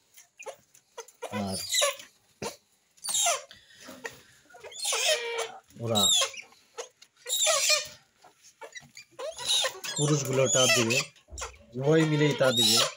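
Captive purple swamphens calling, several loud separate calls spaced a second or two apart, mixed with a man's voice.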